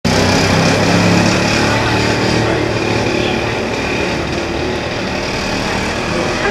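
Street traffic noise with a vehicle engine running, loudest in the first couple of seconds and then easing off.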